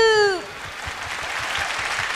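Large audience applauding: even clapping that builds up gradually, just after a voice trails off with a falling pitch at the very start.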